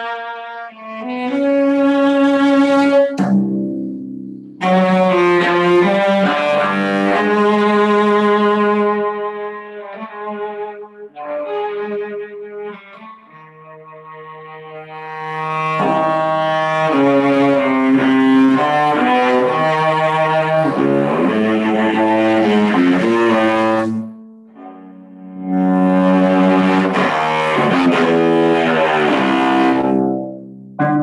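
Solo cello played with the bow, sustained notes often sounding two at a time, in loud phrases with a softer, quieter stretch in the middle.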